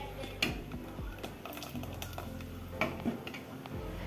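Steel ladle stirring a thick paste in a steel pot, clinking against the pot a few times, with sharp clinks about half a second in and near three seconds in. Background music runs underneath.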